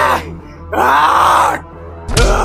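A man's loud groan of about three-quarters of a second, rising then falling in pitch, from a staged fist-fight, over background music.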